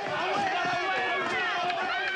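A crowd of villagers shouting over one another, many voices at once with no single clear speaker, loud and unbroken.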